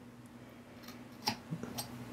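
Quiet handling sounds of hands working pipe thread sealant onto a toilet water hammer arrestor's threaded fitting: a few faint clicks past the middle, over a faint steady low hum.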